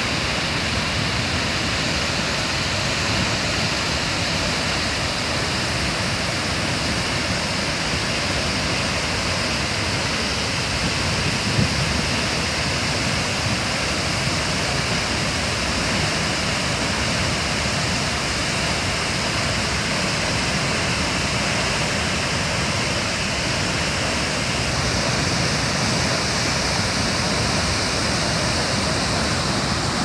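Large waterfall plunging into its pool: a steady, loud rush of falling water.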